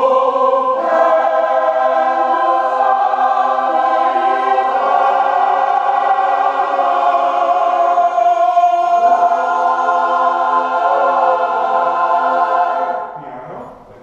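A mixed choir of children and adults sings long held chords, changing chord once about two-thirds of the way through. The singing then fades out over the last second or so, as the song's ending.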